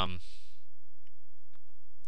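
A few computer mouse clicks, about a second in and again near the end, over a steady low hum.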